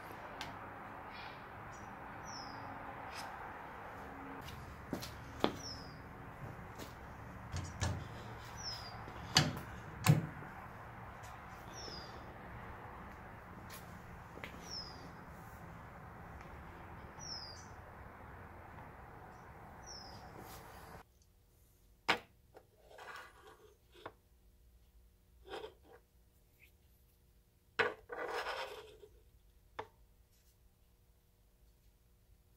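Sharp knocks and clinks of a hand tool working at a cast-iron jointer fence, over a steady shop hum, with a short high chirp repeating about every two seconds. About two-thirds of the way through the hum cuts off abruptly, and then come a few scattered clicks and brief rustles of handling.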